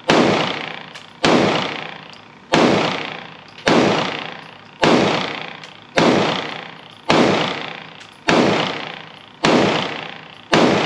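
Smith & Wesson M&P Shield Plus pistol in .30 Super Carry firing nine shots at a steady pace, about one every second and a bit. Each shot is followed by an echo that dies away over about a second in an indoor range.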